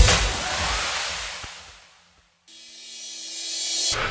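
Breakdown in a minimal tech-house track: the kick-drum beat stops and a noisy wash fades out to a moment of silence about two seconds in. Then a rising white-noise sweep over a low held chord builds up until the beat comes back in at the end.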